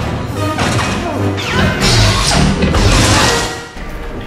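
Film fight soundtrack: orchestral score under several loud lightsaber clashes and swings against the guards' blades. The sound drops away sharply near the end.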